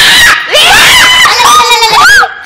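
A loud, high-pitched human scream, starting with a harsh noisy burst and then wavering up and down in pitch.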